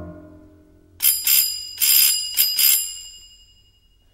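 The score's music fades away, then a small bell rings in about six quick, bright strokes over two seconds and dies away.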